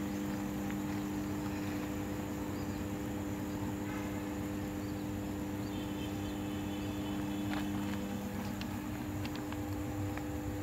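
Steady electrical hum of high-voltage substation equipment at a 220 kV substation: a low drone made of several steady tones that holds unchanged throughout.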